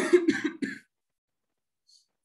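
A man clearing his throat: three short rasps within the first second.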